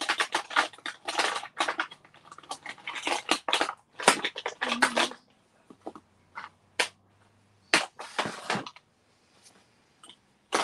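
Small plastic ink pads clattering against one another as a hand rummages through a tub of them. A dense rattle lasts about five seconds, then a few separate clicks follow.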